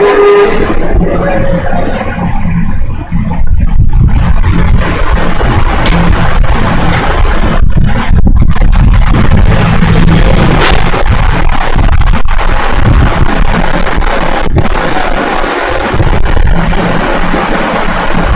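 A loud, steady low rumble with irregular scraping noise over it.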